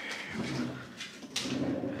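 A person's low, hushed voice close to the microphone, sounding in two short stretches, with a sharp click about two-thirds of the way in.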